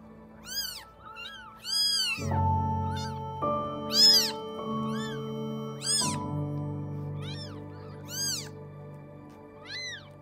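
Newborn kittens mewing: short, high-pitched cries about once a second. Background music with sustained chords comes in about two seconds in.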